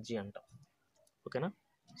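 A man's voice trails off, then during a pause of about a second a few faint clicks sound as a marker tip taps and moves on a whiteboard, before his speech resumes near the end.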